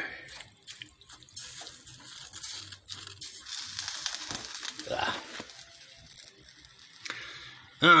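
Snow melting into water in a heated stainless-steel bowl: a soft hiss with faint crackling that fades after a few seconds.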